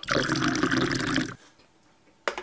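A man drinking a carbonated drink straight from a can, close to the microphone: one wet slurp and gulp lasting a little over a second, which then stops.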